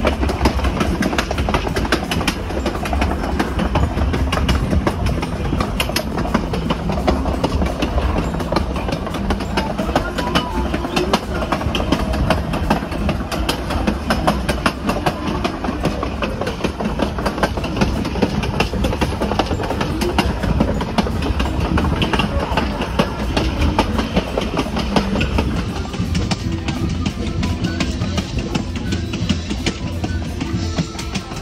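Passenger train running along the track, a steady loud rumble and rattle of wheels on rails heard from the back of the train.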